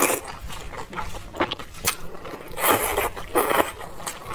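Close-miked eating sounds of wide flat noodles (mianpi) being slurped into the mouth and chewed: a string of short wet slurps, the loudest around three seconds in.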